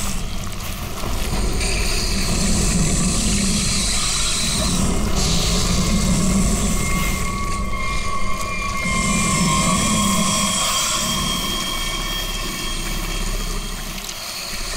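Ominous background-score drone: a low rumble that swells and fades several times, with a steady hiss above it.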